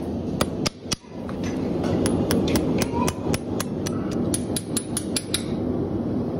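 Farrier's hammer striking horseshoe nails on a horse's hoof, with a metallic ring: a few blows about half a second to a second in, then a quick run of about four light strikes a second that stops shortly before the end, over a steady background noise.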